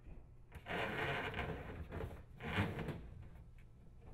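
Rubber dishwasher drain hose rubbing and scraping as it is fed through the hole in the cabinet wall, in two spells: a longer one starting about half a second in and a shorter one a little later.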